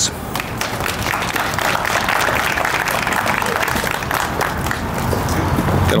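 An audience applauding, with dense, steady clapping.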